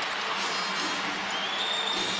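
Steady crowd noise in a basketball arena, the crowd reacting to a made three-pointer.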